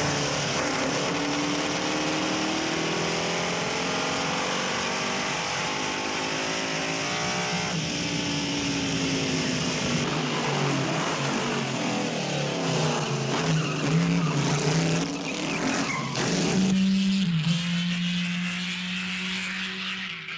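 Ferrari D50's V8 racing engine running hard, its pitch rising and falling again and again through acceleration and gear changes.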